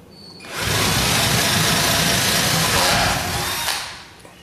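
Cordless drill with a 3/8-inch bit boring a hole through the wooden wall of a beehive brood box. It runs steadily for about three seconds from about half a second in, then winds down near the end as the bit breaks through and is pulled out.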